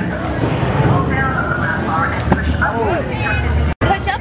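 People talking indistinctly over a steady low rumble in a ride's loading area. The sound drops out for an instant near the end.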